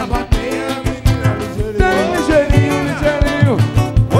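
Live samba pagode band playing: hand drum, pandeiro and a tall conga-type drum keep a steady driving beat under strummed acoustic guitars and cavaquinho. Voices sing gliding, wordless lines in the second half.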